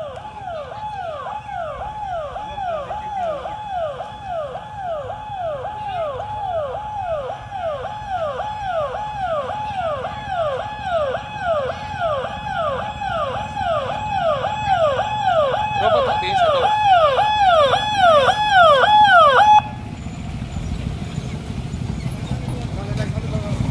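Electronic ambulance siren sounding a repeating falling tone about twice a second, growing louder as the ambulance approaches, then cutting off suddenly near the end. Low engine noise from the vehicle and following motorcycles remains after it stops.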